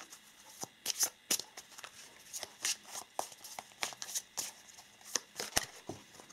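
A deck of oracle cards being shuffled by hand: a run of quick, irregular light snaps and flicks as the cards slide against each other.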